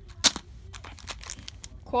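Cardboard box and plastic blister packs of hearing-aid batteries being handled. A sharp snap comes about a quarter second in, then light crinkling and small clicks.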